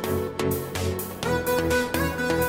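Background music with a steady beat and held melodic notes.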